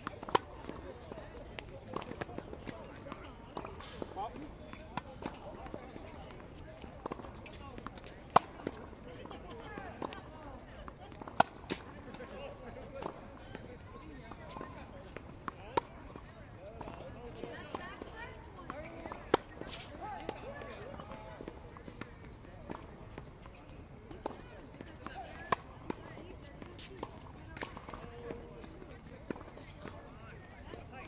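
Tennis balls struck by racquets and bouncing on a hard court during a baseline rally: sharp pops every one to three seconds, the loudest clearly apart from the rest. Faint voices murmur underneath.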